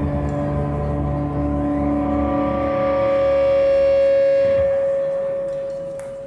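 A live rock band's final held chord ringing out. A steady high note swells and keeps sounding after the bass and low end drop out about four and a half seconds in, then fades away.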